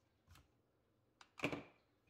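Bottom-cover clips of a Lenovo ThinkPad E15 laptop popping loose as a plastic pry tool works around the edge. A soft click comes a third of a second in, then a sharp click and a louder snap with a brief ring about a second and a half in.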